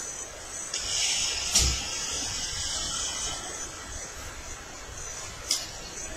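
Sleeved playing cards being handled at a table: a few seconds of rustling and sliding, with a light tap about a second and a half in and a small click near the end, such as a card being set down on a playmat.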